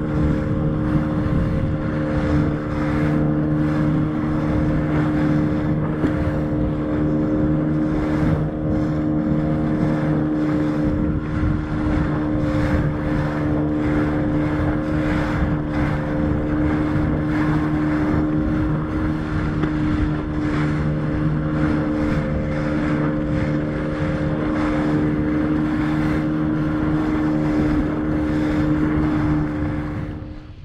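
Outboard motor of an inflatable boat running at a steady speed, a constant unchanging engine hum, with wind buffeting the microphone and water rushing along the hull.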